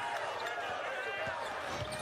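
Basketball being dribbled on a hardwood court over the steady noise of an arena crowd.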